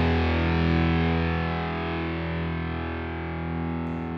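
Music: a distorted electric guitar chord held and slowly fading out.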